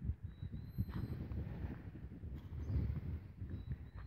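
Low, irregular rumbling with many soft knocks: handling noise on a handheld camera's microphone as it is moved through a field. A faint, thin, high tone sounds briefly near the start and again near the end.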